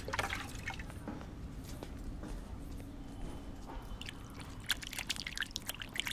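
Water poured from a mug over a rooftop edge, faint dripping and splashing with a low steady background, the drips growing more frequent near the end.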